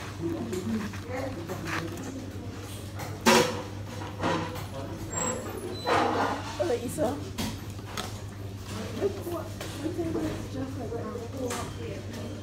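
Indistinct chatter of voices in a restaurant dining room over a steady low hum, with a sharp knock about three seconds in and a smaller one near six seconds.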